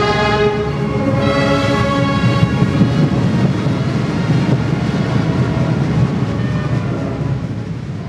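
A massed ensemble with brass holding loud sustained chords, which give way from about two and a half seconds in to a dense, rumbling swell with no clear chord, easing off near the end.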